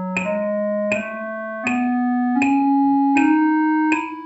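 Yamaha digital keyboard with a piano sound playing the concert E major scale upward in quarter notes, one note on each beat at 80 beats per minute, reaching the top E near the end. A metronome clicks on every beat.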